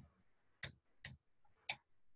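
Computer keyboard keystrokes: four separate, faint key clicks spaced unevenly over two seconds.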